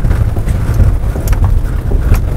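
Mercedes Sprinter 4x4 van crawling slowly over a run of logs: a steady low rumble of the engine at low revs, with a few short knocks as the tyres ride over the logs. Wind on the microphone adds to the low rumble.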